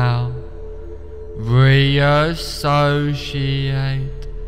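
Meditation background music: a low voice chanting a mantra in long held notes over a steady drone.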